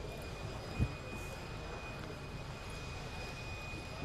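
Steady background hum with a faint, thin high-pitched whine running under it, and one soft low thump about a second in.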